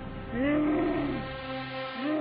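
A boy's voice making one long, drawn-out vocal noise that rises and falls in pitch, then settles into a lower held tone.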